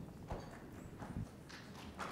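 A few faint, scattered knocks and taps over quiet room tone.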